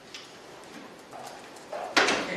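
A few light clicks and handling knocks as a bag is set down on a meeting-room chair, ending in one sharp, loud knock.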